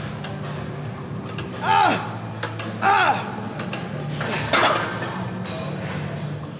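A man's strained exertion cries, three of them about a second and a half apart, each rising then falling in pitch, as he forces out the final reps of a heavy back set. Background music plays underneath.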